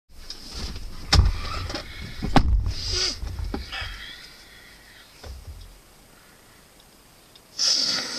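Someone getting into the front seat of a parked van: a thud about a second in and another sharp knock a little after two seconds, with rustling of clothes and seat. Then a quiet stretch, and a short hissing sound near the end.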